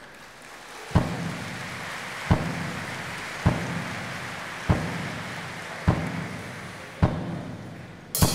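Tuvan shaman's large hand-held frame drum struck slowly, six single beats about a second and a quarter apart, each ringing briefly. A steady hissing rustle runs underneath the beats.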